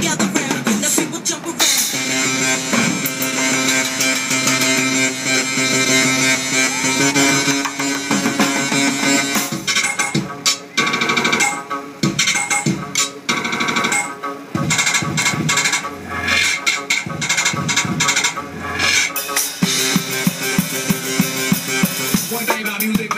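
Acoustic drum kit played live over recorded backing music from a loudspeaker. Held musical tones fill the first half, and from about ten seconds in dense, rapid drum hits come to the front.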